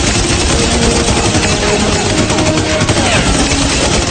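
Rapid automatic gunfire, shots overlapping in a continuous stream.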